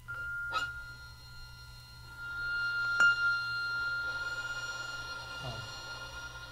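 Struck metal percussion ringing: a high sustained tone with several overtones, struck again about half a second in and more sharply about three seconds in. Shimmering high overtones swell after the second strike and slowly fade.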